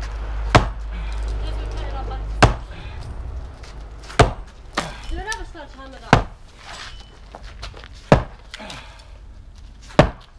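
Sledgehammer blows against a brick pillar at a steady pace of about one every two seconds, five in all. The pillar is wobbling but still holding up.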